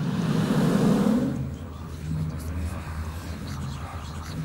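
A rushing swell of noise, loudest about a second in and fading by a second and a half, over a low droning music bed with repeating low notes.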